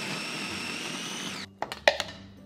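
KitchenAid food processor motor running steadily as it pulverizes onion, cutting off about a second and a half in. A few sharp clicks and knocks follow as a fork scrapes the chopped onion out of the plastic bowl.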